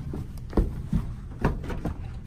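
A few soft thumps, about half a second apart, over a low steady rumble.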